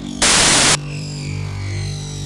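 Electronic music with a sustained bass note, cut through about a quarter second in by a half-second burst of static-like white noise that stops abruptly. After the burst, faint high tones slowly fall in pitch over the bass.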